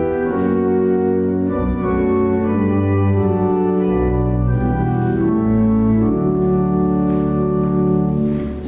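Church organ playing a hymn tune: full, sustained chords that change every second or so over a moving bass line.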